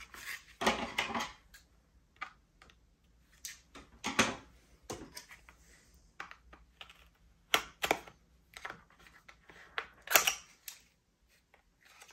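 Packaging being handled and unwrapped: irregular rustling and crinkling with sharp clicks, loudest about four seconds and ten seconds in.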